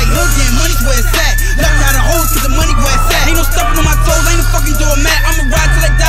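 Hip hop track: a heavy bass beat with a high, sustained synth melody line, and a rapping voice over it.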